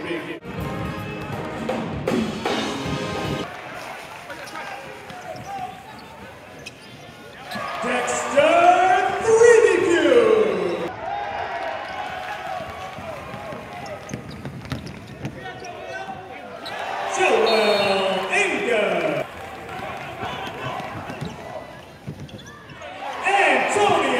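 Live basketball game sound on a hardwood court: a ball dribbling in the first few seconds, then voices from the crowd and players rising in loud shouts three times, about a third of the way in, past the middle and near the end.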